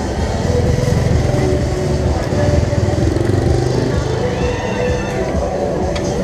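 A motorbike engine running close by in a street, loudest through the first few seconds. Background music and voices can also be heard.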